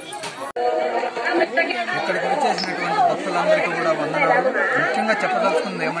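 Speech only: people talking, with other voices chattering around them, and an abrupt edit cut about half a second in.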